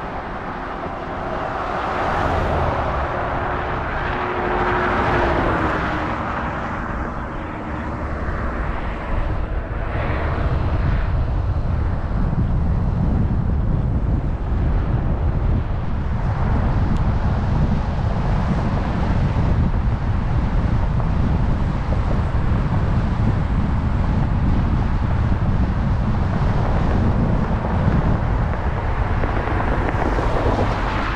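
A vehicle going by on the road, its pitch dropping as it passes about five seconds in. After that, a steady low rumble of wind on the microphone.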